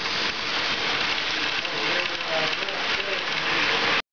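Model freight train rolling along the layout's track: a steady hiss-like rolling noise of metal wheels on rails.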